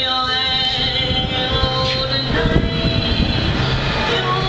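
A woman singing while accompanying herself on a Yamaha digital piano, with sustained piano chords under her voice.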